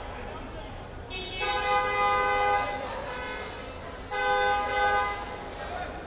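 A car horn sounding twice, a long honk of about a second and a half and then a shorter one of about a second.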